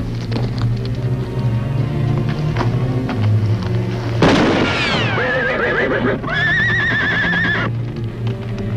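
Background music, then a sudden bang about four seconds in, followed by horses neighing: several wavering whinnies, the last held for over a second.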